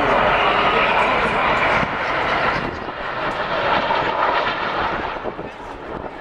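Jet noise from a formation of Alpha Jet trainers passing overhead: a loud, steady roar that fades away as the formation moves off.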